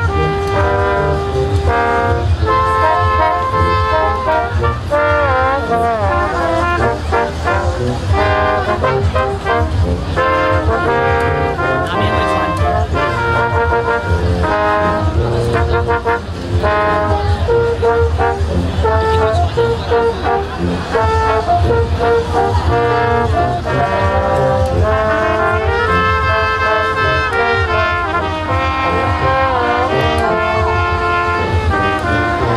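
A brass quintet of trumpets, trombone and tuba playing a piece together, with held chords and moving melodic lines that run on without a break.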